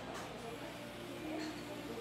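Faint, distant voices over a low steady hum.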